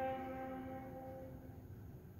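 Solo viola holding one long bowed note that dies away about a second and a half in: the closing note of the piece.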